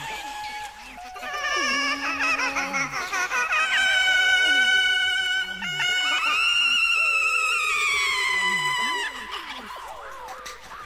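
Soundtrack music with a high, wavering wailing voice held for several seconds, gliding down and breaking off near the end, over lower voiced notes.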